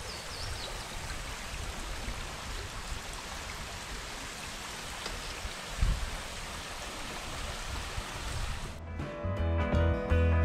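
Shallow creek running over rocks and riffles, a steady rush of water, with a brief low thump about six seconds in. Background music comes in near the end.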